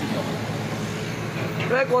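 Steady low machine hum in a pause in a man's speech, which starts again near the end.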